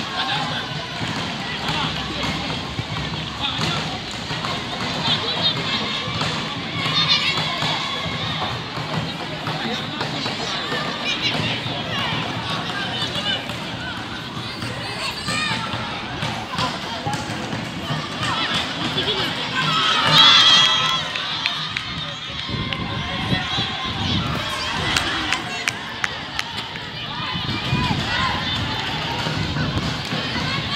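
Players and onlookers shouting and calling across an outdoor football pitch during play. The shouting swells louder about twenty seconds in.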